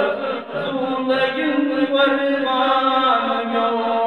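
A man chanting a Kashmiri naat, a devotional poem in praise of the Prophet, in long held notes that glide from one pitch to the next.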